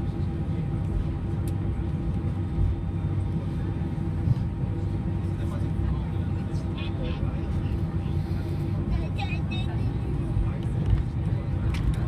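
Airliner cabin noise while taxiing after landing: a steady low rumble from the idling engines, with a few constant hums running through it. Faint, indistinct passenger voices are heard now and then.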